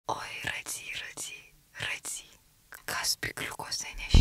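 A person whispering in short, breathy phrases with brief pauses between them.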